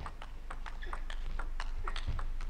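Celluloid-type table tennis ball struck back and forth in a fast rally, a quick irregular run of sharp clicks as it hits bats and table.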